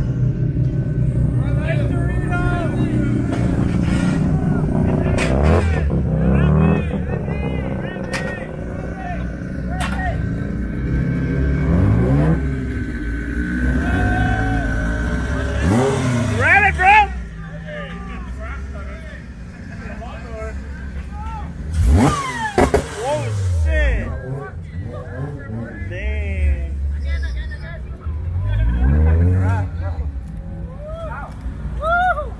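Modified cars driving slowly out one after another, their engines revving up and dropping back several times, with crowd voices in between.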